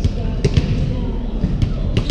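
Volleyballs being hit and bouncing in a large gym with a hardwood floor: about four sharp smacks, the strongest about half a second in, over players' chatter.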